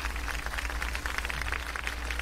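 A pause in the talk: a steady low electrical hum with faint hiss from the microphone setup.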